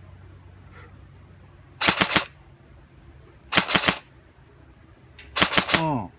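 Next-generation M4 airsoft electric gun (Team6 custom with a Big-out DTM electronic trigger and samarium-cobalt motor) firing three short bursts of rapid shots about two seconds apart, with a single shot just before the last burst.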